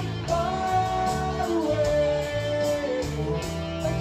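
Live rock band playing: electric and acoustic guitars, bass and drums on a steady beat, with a long held melody note that steps down in pitch about halfway through.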